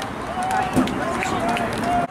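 People's voices calling out in short repeated calls over outdoor background noise, cut off abruptly at the end.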